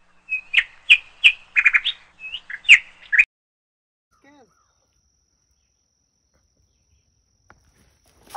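A songbird chirping nearby: a quick run of short, high chirps lasting about three seconds.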